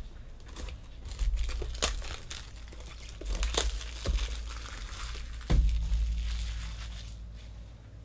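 Clear plastic shrink wrap being torn and crinkled off a small cardboard box by hand, a dense irregular crackling. A low thump comes about five and a half seconds in, as the box is handled, and the crackling then dies away.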